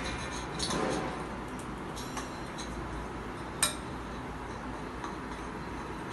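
A few light clinks of glass and kitchen utensils as spices go into a bowl of marinade, with one sharper clink about three and a half seconds in, over a steady low hum.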